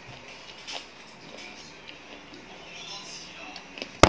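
Quiet small clicks and handling noises of someone eating rice by hand from a glass plate. At the very end comes a sudden loud knock and clatter as the recording phone falls over.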